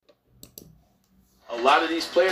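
Near silence after the intro music cuts off suddenly, with two faint clicks about half a second in; a voice begins about a second and a half in.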